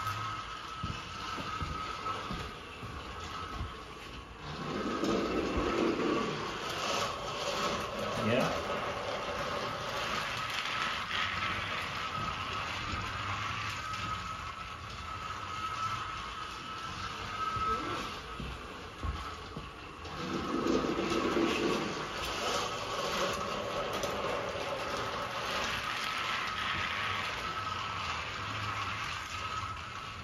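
Battery-powered motorized Thomas toy engine running by itself around plastic track: a steady high-pitched motor whine with the rattle of its wheels on the plastic rails. The sound swells louder twice, about five and about twenty-one seconds in.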